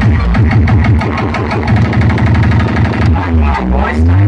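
Loud electronic DJ dance music over a sound system, with heavy bass beats. A fast run of repeated bass notes fills the middle, and a pitch swoops down and back up near the end.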